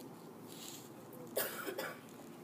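A person coughing, two quick coughs about a second and a half in, over faint room noise.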